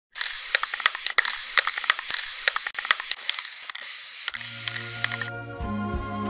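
Aerosol spray-paint can hissing steadily, with scattered sharp clicks, until it cuts off suddenly a little after five seconds. Low, sustained music tones come in about four seconds in.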